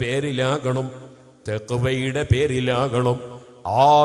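A man speaking in a sermon-style address, in short phrases separated by brief pauses.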